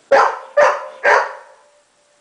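Golden retriever barking loudly three times in quick succession, about half a second apart.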